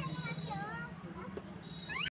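High voices in short gliding calls over a steady low hum.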